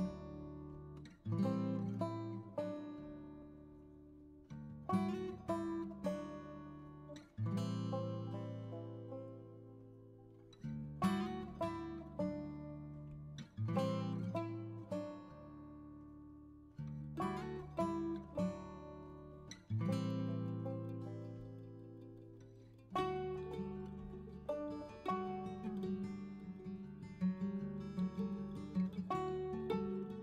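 Background music on acoustic guitar: plucked notes and chords that ring and fade in phrases of a few seconds each, turning to a busier, steadier picking pattern about 23 seconds in.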